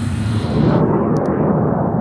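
Deep, steady rumble of an airliner's jet engines in cruise flight. It swells about a second in as the higher cockpit hiss falls away.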